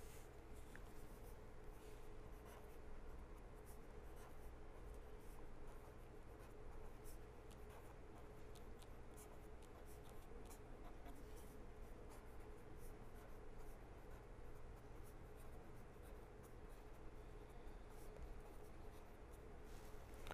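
Faint scratching of a pen writing on paper, many small strokes in quick succession, over a faint steady hum.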